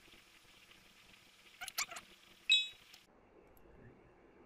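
A quick run of computer-mouse clicks a little under two seconds in, followed half a second later by a short bright ringing ping that fades quickly.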